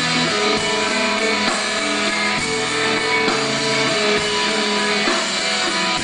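A live rock band playing an instrumental passage without singing: electric guitars and bass hold steady notes that change about once a second.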